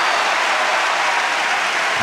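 Opera house audience applauding steadily at the curtain fall ending the first act.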